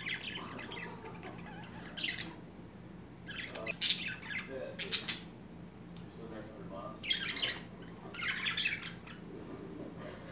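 Budgerigars chirping and chattering in short high-pitched bursts, a cluster every second or two, with two sharp clicks near the middle.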